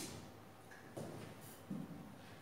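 A few faint taps, one about a second in and another near the end, from a pen tapping on an interactive whiteboard screen while the annotations are cleared.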